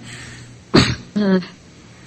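A person clears their throat once, sharply, then says a short 'So', heard over an online video call's microphone with a faint steady hum underneath.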